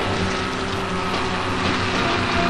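Large open-pit mining excavator working: steady mechanical clatter over a constant machine hum as the bucket digs into rock.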